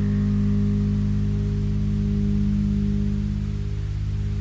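A final low bass-guitar chord ringing out and slowly fading as a solo bass piece ends, with a slight pulsing in its level.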